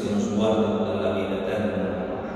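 A man's voice intoning a liturgical chant on a steady held pitch, the celebrant singing a prayer at the elevation of the host.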